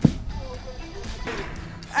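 A single sharp thud near the start as an object dropped from height hits the dirt ground.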